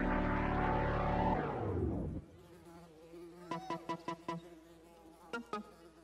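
A loud, buzzing electronic sound effect in a dance-showcase soundtrack, gliding down in pitch and cutting off about two seconds in. It is followed by quiet, sparse, short plucked-sounding notes.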